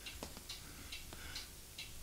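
A few faint ticks or clicks over quiet room tone.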